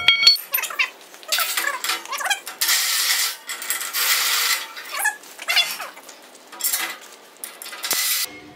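Cordless impact driver spinning a sprint car reamer through a tight nylon torsion-bar bush in short bursts, with squeaks from the nylon as it is cut out. There is a metal clink at the very start.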